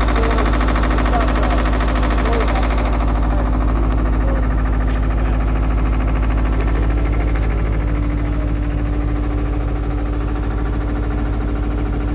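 Diesel engine of construction equipment running steadily at a constant pitch, a loud even drone; a second steady tone joins about eight seconds in.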